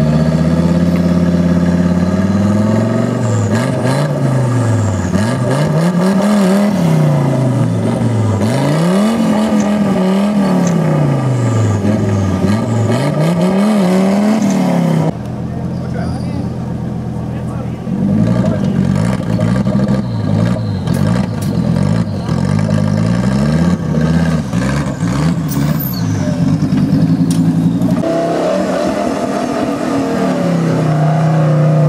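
Engine of a 4x4 off-road trial buggy revving hard over and over, its pitch rising and falling about every two seconds as it claws at a rock step. About halfway through, the sound changes abruptly to a lower engine note with shorter, uneven blips of throttle, and it revs up again near the end.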